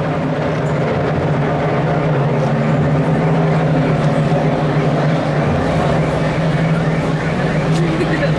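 A steady low engine hum that holds one unchanging pitch, under the chatter of a large crowd.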